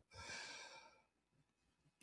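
A man's faint breath out, like a short sigh, lasting under a second near the start, then near silence.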